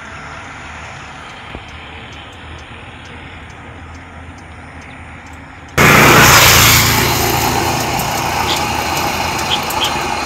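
Steady outdoor background noise, low at first, then suddenly much louder about six seconds in, easing off a little toward the end.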